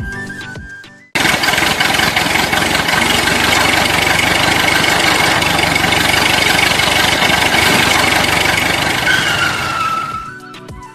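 Loud, steady engine noise that cuts in suddenly about a second in, after a short bit of music fades away; a tone slides down in pitch near the end.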